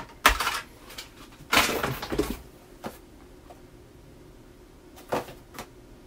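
Cardboard boxes and packaged items knocking and rustling as a hand digs into a shipping box and lifts out a boxed item. There is a sharp knock just after the start, a longer rustle at about two seconds, and another short knock about five seconds in.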